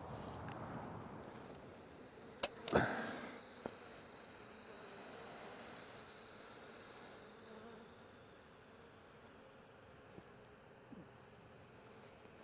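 Honey bees buzzing faintly and steadily around the hives, with two sharp clicks close together about two and a half seconds in.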